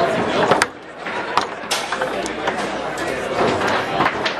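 Foosball play: half a dozen sharp, irregular clacks of the ball being struck by the plastic men and of the rods knocking, over steady crowd chatter.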